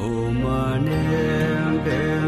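Background music of a sung mantra over a steady low drone, starting abruptly as a new piece begins.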